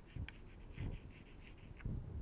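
Chalk writing on a chalkboard: faint, irregular scratching as the words are written.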